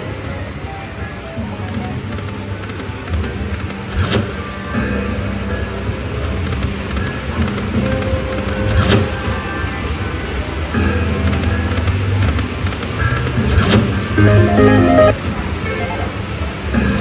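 Video slot machine's bonus-round music and reel-spin jingles during free games, with sharp clicks about 4, 9 and 14 seconds in, over a steady low hum.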